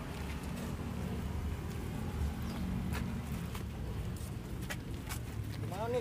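Steady low outdoor rumble with scattered light taps and clicks, and a man's voice starting just at the end.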